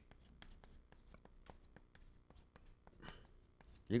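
Chalk writing on a blackboard: a run of faint, quick taps and scrapes as characters are written.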